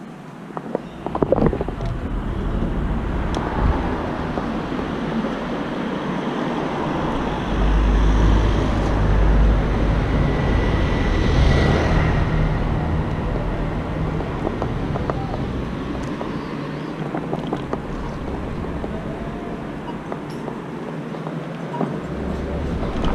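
Wind buffeting the microphone, with road and traffic noise, as a small electric scooter rides along a city street. There is a continuous low rumble that grows heavier for a few seconds around the middle.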